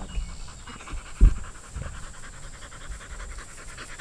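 A black dog panting in quick, even breaths to cool off in the heat. A low thump about a second in, and a softer one shortly after.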